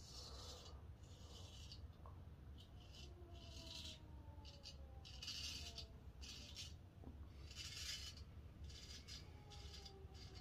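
Stainless steel straight razor, a Henckels Friodur, scraping through two days of lathered stubble on the cheek and jaw in a series of short, faint strokes.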